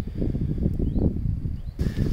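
Low, uneven rustling and rumbling of someone moving through a dense, waist-high mustard crop, with a few faint, short high chirps over it.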